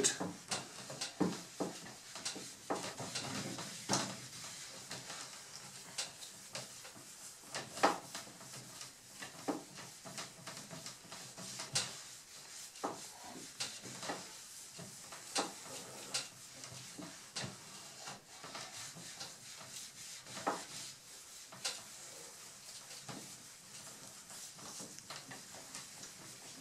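Shellac polishing pad rubbed in circles over a walnut-veneered tabletop while top-coat shellac is applied by hand: a faint, soft rubbing with many small irregular ticks and taps.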